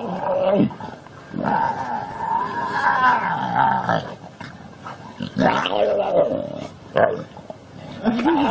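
Growling and snarling from a dog and tiger cubs wrestling, in several bouts: a long wavering growl from about 1.5 s to 4 s in, another about 5.5 s in, and short snarls at the start and near the end.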